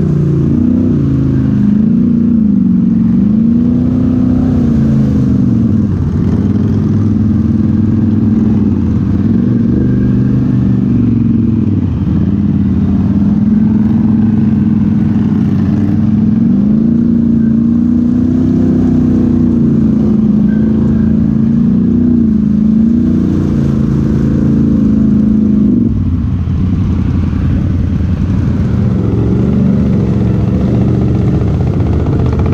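ATV engine running under throttle through mud, its pitch rising and falling in waves as the throttle is worked.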